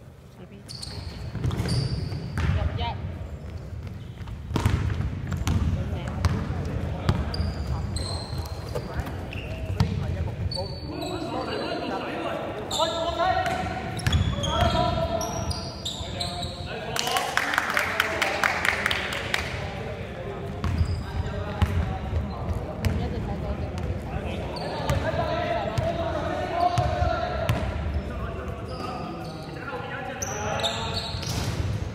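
Basketball bouncing on a wooden indoor court, a run of sharp thuds, in a large hall, with players calling out.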